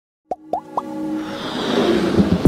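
Animated logo intro sting: three quick pops rising in pitch, about a quarter second apart, then a swelling musical build-up.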